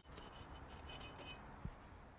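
Faint, steady background noise with a single soft click about a second and a half in.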